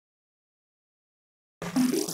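Dead silence for about a second and a half, then an intro jingle starts suddenly with a noisy rush over its first notes.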